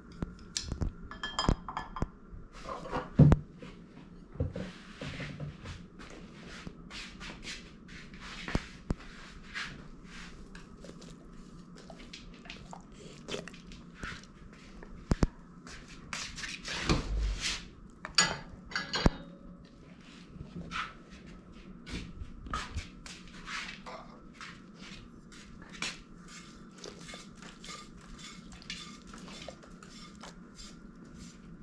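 Scattered light clinks and knocks of tableware on a dining table, with a louder bump and a few sharper knocks around 17 to 19 seconds in.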